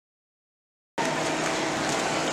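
Dead silence for about the first second, then the game sound cuts in suddenly: a steady rushing of water splashing from swimmers in an indoor pool.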